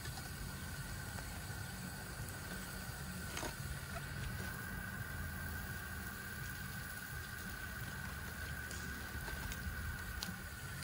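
Outdoor shower spraying steadily over a low fluttering rumble, with a couple of faint clicks.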